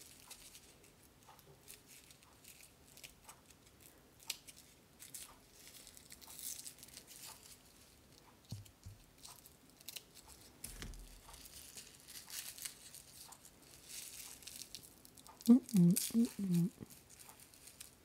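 Scissor tips and fingers picking at and tearing off small bits of paper stuck to a rhinestone sandal strap: faint clicks, scratches and paper tearing. Near the end a short murmur of a voice is the loudest sound.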